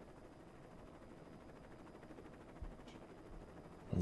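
Faint steady hiss of room tone from a close microphone, with a single soft click about two-thirds of the way through.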